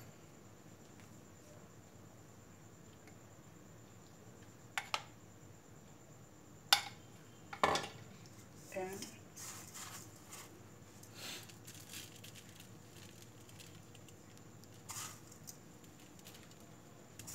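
A few sharp clinks of a spoon against stainless steel bowls and soft scattered handling noises, with quiet room tone between them.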